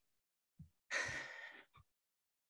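A woman sighs once, a breathy exhale of under a second about a second in.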